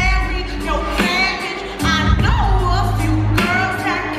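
Live pop song: a female singer singing into a handheld microphone over the band's bass and backing music, played loud through the venue's sound system.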